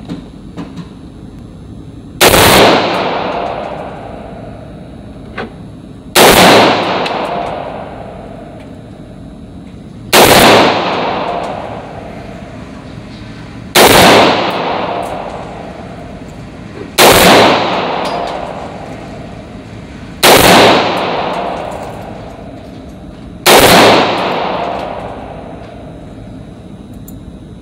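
AR-15 rifle fired in slow, deliberate single shots, seven of them about three to four seconds apart. Each shot is very loud and rings on in a long echo that fades over about two seconds.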